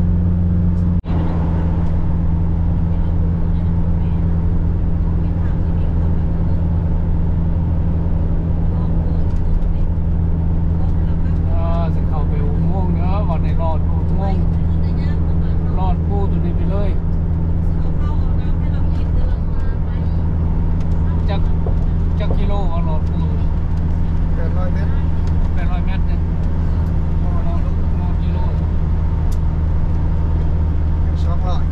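Steady low road and engine drone of a car at highway speed, heard from inside the cabin. Voices come and go over it in the middle part. There is a brief click about a second in.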